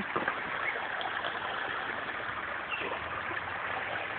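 A small rocky stream running steadily, a continuous rush of water.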